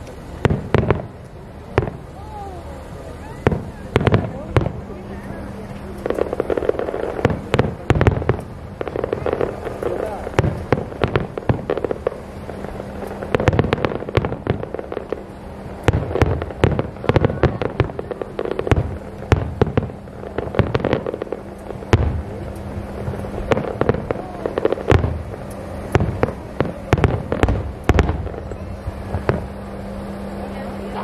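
Aerial firework shells bursting in rapid, irregular succession, dozens of bangs one after another with no let-up.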